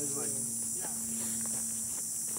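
Steady high-pitched insect chorus, with a few faint ticks.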